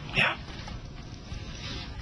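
A woman's single short, breathy "yeah", falling in pitch, then a low steady hiss of background room tone.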